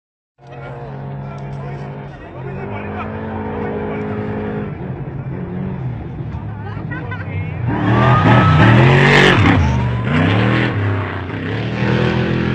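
Off-road race vehicle's engine at high revs, growing louder as it approaches. It is loudest as it passes about eight to ten seconds in, with the engine pitch swinging up and down.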